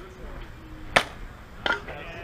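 A softball bat hits a slow-pitched softball, making one sharp crack about halfway through. About 0.7 s later there is a second, shorter clank that rings briefly.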